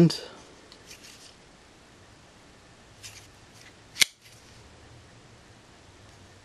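A Kershaw Whirlwind assisted-opening folding knife snapping open: one sharp click about four seconds in, after a few faint handling clicks.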